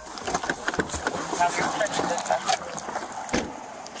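Rapid knocks, clicks and rustling of a body-worn camera as an officer climbs out of a patrol car, with a heavier thump a little past three seconds in. Muffled voices sound underneath.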